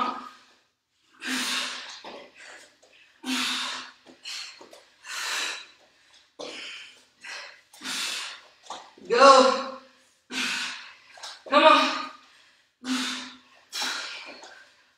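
A woman breathing hard through a set of push-ups: a forceful breath out about once a second, each rep paced by its own exhale. Two louder, voiced grunting breaths come a little past the middle.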